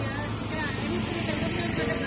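Steady low rumble of vehicle engines and tyres on a paved road, a car moving off with a motorcycle approaching.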